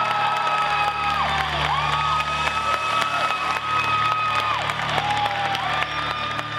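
An audience applauding and cheering under music whose long held notes each slide up into place and hold for a second or more.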